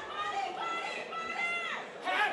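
Voices yelling from around the cage over a low crowd murmur, with two long, drawn-out high shouts in the first second and a half.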